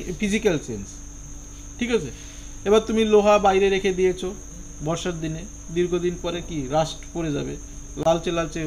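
Crickets chirping steadily in a high, unbroken trill, under a man's voice speaking in short phrases with a long drawn-out hesitation sound in the middle.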